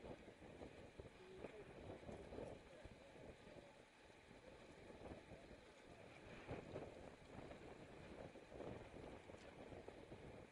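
Faint wind noise on a camera riding among a pack of road cyclists, with indistinct voices of nearby riders.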